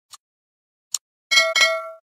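Sound effects of a subscribe-button animation: two short mouse clicks, then a bell chime struck twice in quick succession, its tones ringing on.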